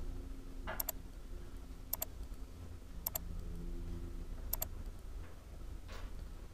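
Computer mouse clicking four times, roughly a second apart, each click a quick double tick of press and release, over a low steady hum.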